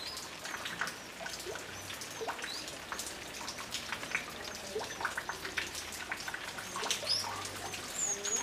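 Social flycatchers (bem-te-vi-de-penacho-vermelho), an adult and its fledgling, calling: a scatter of short, sharp chirps throughout, with a quick run of high notes starting near the end.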